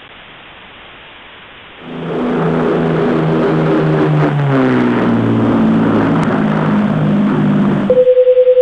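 Static hiss, then about two seconds in a low-flying airplane comes in loudly overhead. Its engine tone drops in pitch about halfway through as it passes.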